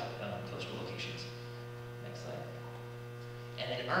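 Steady low electrical mains hum, with a stack of even overtones, in a quiet room. A short hesitant 'uh' comes near the start.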